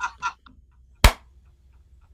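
The tail of a laugh, then a single sharp tap about a second in.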